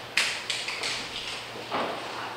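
About six irregular taps and knocks, the first the loudest, over a quiet room hum.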